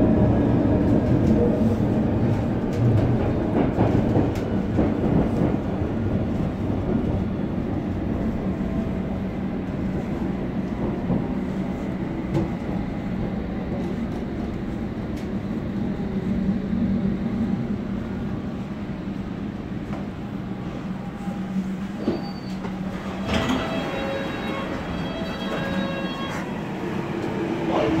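A London Underground Metropolitan line train running, heard from inside the carriage: a steady low rumble of wheels and running gear. Higher whining tones join in about three-quarters of the way through.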